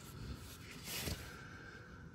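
Faint handling noise of a socket wrench being worked on a 15 mm torque converter bolt, a little louder about a second in.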